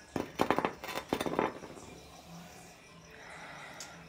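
A person sniffing beer in a glass to take in its aroma: a few short, sharp sniffs in the first second and a half, then quieter.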